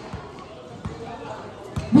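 A basketball being dribbled on a court, several bounces at uneven spacing, with faint voices behind.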